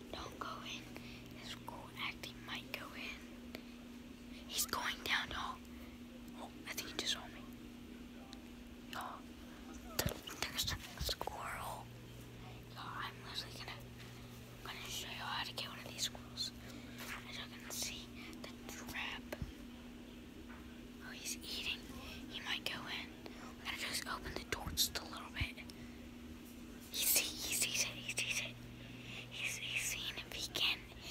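A boy whispering close to the phone's microphone, in short hissy phrases, over a steady low hum.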